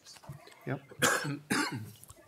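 A person coughs once, sharply, about a second in.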